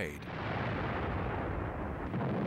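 A steady rumbling noise of battle sound effects, like massed aircraft and distant gunfire, rising just after the narration stops and holding level throughout.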